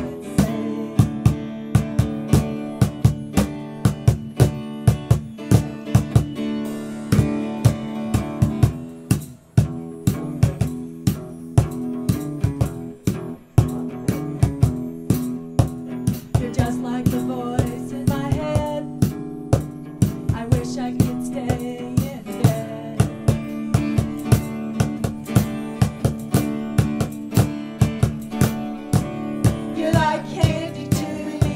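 Live acoustic duo playing a song: an acoustic guitar holding chords under a drum kit keeping a steady, even beat of sharp hits.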